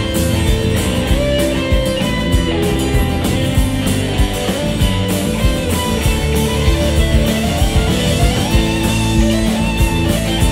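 Live rock band playing an instrumental passage: an electric guitar plays a lead line with notes that bend up and down, over steady drums.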